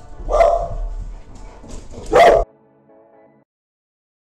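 Pit bulls barking: two loud barks about two seconds apart, the sound cut off abruptly just after the second.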